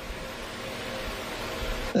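Steady hiss of room and line noise on a remote video-call audio feed, with a faint hum underneath, slowly growing louder until a man starts speaking at the very end.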